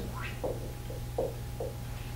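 Steady low hum with a faint steady higher tone, and a few faint, brief sounds scattered through it.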